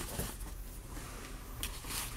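Quiet room with a few brief, faint scrapes and rustles from Boston terrier puppies moving on the carpet.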